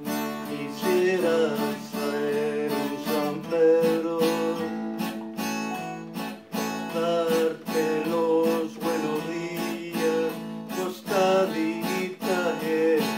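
Acoustic guitar strummed in a steady rhythm, playing chords.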